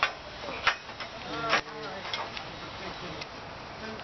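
Light, sharp metal clicks and taps, about six spread over a few seconds, as a steel crop support bar and its clip are fitted onto a galvanised steel tunnel hoop.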